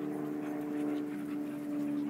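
A dog panting close by, over a steady low mechanical hum.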